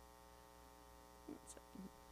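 Near silence: a steady electrical mains hum, with a few faint, brief sounds in the last second.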